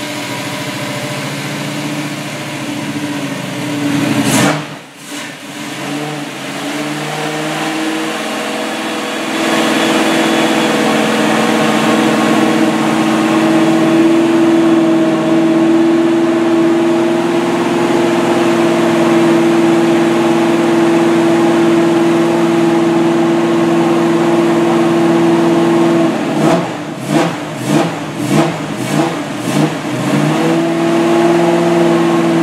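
Freshly rebuilt small-block Chevy V8 with Holley Sniper fuel injection running just after its first start-up: a sharp rev and a dip about four seconds in, then a steady faster run from about ten seconds on, as for breaking in the new camshaft. Near the end the engine rises and falls in about seven quick pulses.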